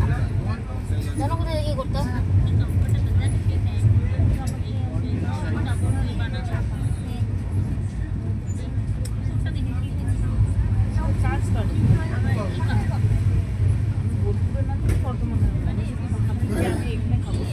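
Steady low rumble of an LHB passenger coach running at high speed, about 130 km/h, heard from inside the coach, with passengers' voices murmuring underneath.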